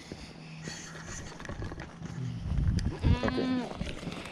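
A goat bleating once, a wavering call about three seconds in. Just before it there is a low rumble of wind or handling on the microphone.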